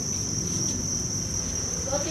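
Chorus of many farmed Thai crickets chirping together, blending into one steady, unbroken high-pitched trill.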